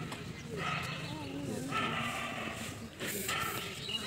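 People's voices talking quietly, the words unclear.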